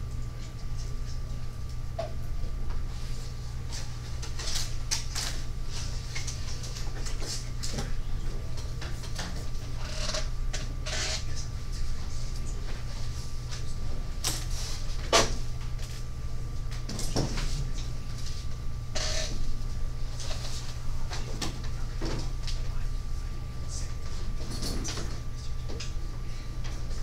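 Classroom room tone: a steady low electrical hum with a thin steady high tone, broken by scattered small knocks and clicks of desks, chairs and papers. The sharpest knock comes about halfway through.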